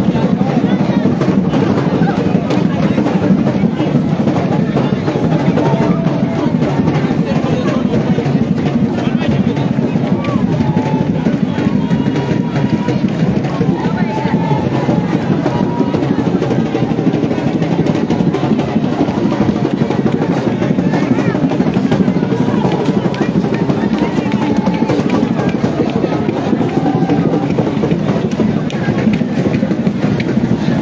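A large crowd, many voices at once, over drumming and music; the sound is loud and continuous.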